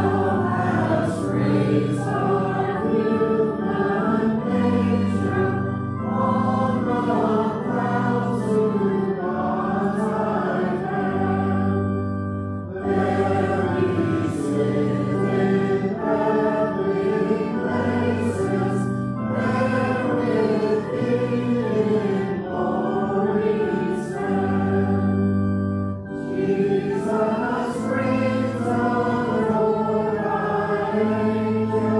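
Church congregation singing a hymn to organ accompaniment, held bass notes under the voices, phrase by phrase with brief breaks between lines.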